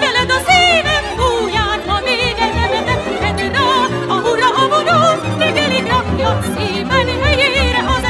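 Background music with a melody that wavers strongly in pitch over a steady accompaniment.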